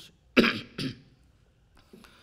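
An elderly man coughs twice, a sharp loud cough followed by a weaker one, then falls quiet.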